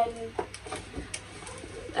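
A woman's drawn-out spoken 'then...' trailing off, followed by several light clicks and taps of small objects being handled as the next gift is reached for.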